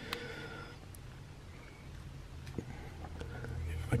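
Faint handling of a plastic action figure: a few soft clicks as a small plastic accessory is pressed against its arm, over a low steady room hum.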